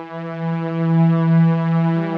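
The Arturia Analog Lab V "Blue Strings" preset, a low viola-and-cello-style synth-string pad, holding a sustained note that swells louder toward the middle.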